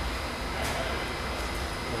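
Steady rushing and low rumble of water pumped at about 140 gallons a minute through a four-inch check valve and its piping on a test loop, with a faint steady high tone running under it.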